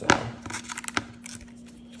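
Handling noise of a rubber suction-cup ball retriever being worked around a pickleball paddle's grip: a sharp knock just after the start, then a few lighter clicks and rubbing, over a faint steady hum.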